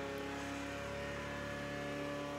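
A steady hum made of several held tones at fixed pitches, with no change through the pause.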